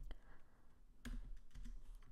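A few faint keystrokes on a computer keyboard, one at the start and a couple about a second later, as a semicolon and a new line are typed.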